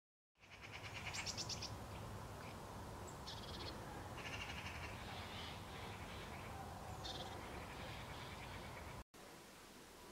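Outdoor ambience of birds calling in short chirps and trills over a steady low rumble. Just after nine seconds it cuts off abruptly to quieter room tone.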